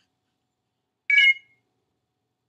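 A single short electronic alert chime from the Mac, under half a second long with a few clear pitches, about a second in, sounding as the remote-screen connection to the iPhone drops.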